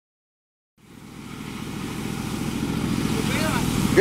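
A Caterpillar 307.E2 mini excavator's diesel engine running steadily. It fades in from silence about a second in, with faint voices toward the end.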